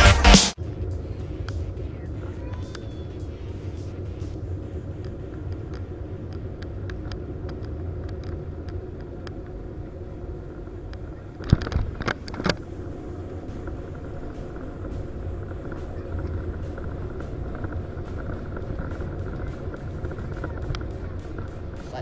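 Airbus A321-200 cabin noise from a window seat over the wing during landing: a steady low rumble of engines and airflow. About halfway through comes a loud thump, then a second one about a second later, as the wheels touch down. The rumble of the roll-out follows with a faint steady tone.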